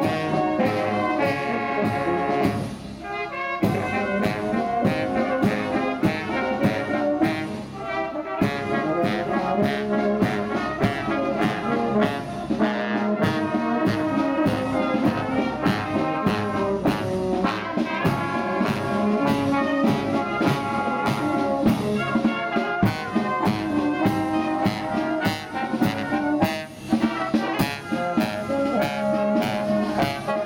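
Brass marching band playing a march on the move, horns and trumpets over a steady drumbeat, with short breaks between phrases about 3 and 8 seconds in.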